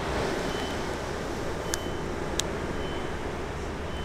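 Steady outdoor background noise with a low rumble. A faint high beep repeats about once a second, and two sharp clicks come about halfway through.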